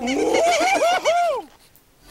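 A cartoon character's strained, angry cry through gritted teeth. Its pitch swoops up and down in about five short arches for a second and a half, then stops.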